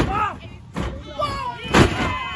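Wrestlers' bodies and feet hitting the ring canvas: three heavy thuds about a second apart, the last the loudest, with shouting voices between them.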